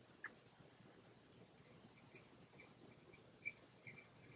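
Near silence with faint, irregular small high ticks and squeaks, two or three a second, the clearest about three and a half seconds in: tying thread being wound from a bobbin holder onto a fly hook.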